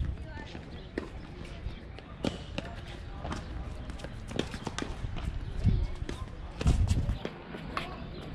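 Tennis ball being struck and bouncing in a rally, sharp knocks coming about once a second, with indistinct voices and low rumbles under them.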